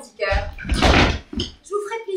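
Short, broken vocal sounds from the actors, with a loud noisy burst about a second in.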